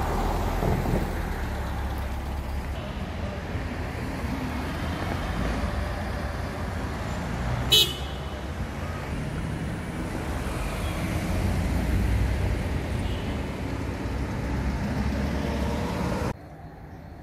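City street traffic: cars driving past with a steady low rumble of engines and tyres. About eight seconds in there is one brief, sharp high sound, the loudest moment.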